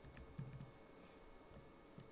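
Faint typing on a computer keyboard: a few scattered keystrokes, with a brief low sound about half a second in.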